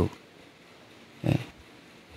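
A pause in a man's speech through a handheld microphone, broken by one short low vocal sound, like a grunt or clearing of the throat, a little over a second in.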